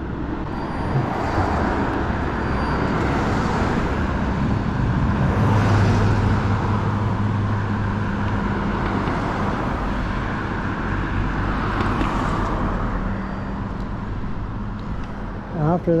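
Cars passing on a street over a steady rush of road noise. Several vehicles swell and fade, with the loudest, a low engine hum, about six seconds in.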